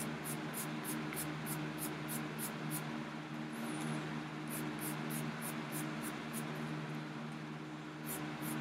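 Quick rhythmic scrubbing strokes, about three or four a second, as a small hand-held cleaning tool is rubbed back and forth over a vintage paperback's cover. The strokes come in two runs with a pause of about a second and a half between them, over a steady low hum.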